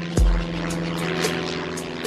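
A rushing aircraft fly-over sound effect laid over a rap beat, with a deep bass hit just after the start and ticking hi-hats.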